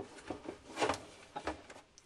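Printer mechanism being set into its plastic housing: a few short plastic-and-metal knocks and clicks with some rubbing, the loudest knock near the middle.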